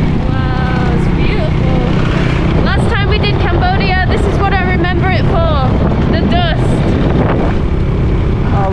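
Motorbike engine running with steady wind rush on the microphone while riding a dirt road. A voice talks over it for a few seconds in the middle.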